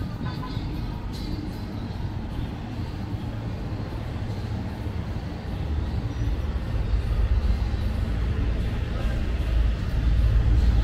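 City street traffic noise: a steady wash of passing vehicles with a low rumble that grows louder about six seconds in.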